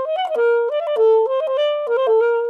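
Alto saxophone playing a fast classical run in a dotted rhythm: a held note followed by three quick notes, repeated. This is a practice variation of a sixteenth-note passage that lengthens the first note of each group of four.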